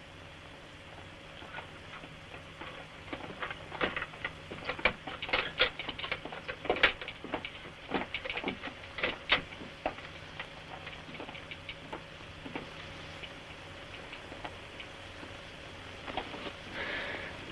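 Footsteps of a group of soldiers coming down stone stairs: a patter of irregular steps that builds to its loudest in the middle and then thins out, over a faint steady hum.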